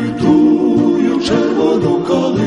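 A choir singing a song in Ukrainian, voices holding long sung notes.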